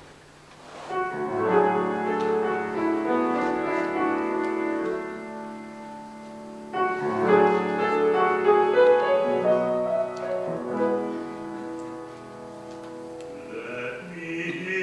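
Piano playing the introduction to an art song: sustained chords begin about a second in, and a new phrase starts about seven seconds in. A singer's voice enters near the end.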